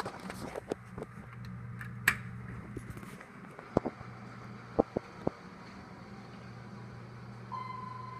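Doors of a 1998 Dover hydraulic elevator sliding open, with several sharp clicks from the door equipment, over a low steady hum. A steady electronic beep starts near the end.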